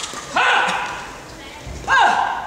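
Two loud shouts from badminton players after a point, one just after the start and a sharper one rising in pitch near the end, each ringing on in the large hall.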